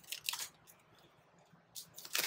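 Brief rustling of packaging: a cellophane bag and paper in a cardboard box being handled, in a short burst at the start and again just before the end, with a quiet gap between.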